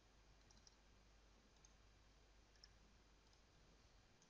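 Near silence: faint room tone with a few soft computer mouse clicks, the loudest about two and a half seconds in.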